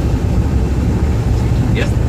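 Steady low rumble of a bus on the move, engine and road noise heard from inside the passenger cabin.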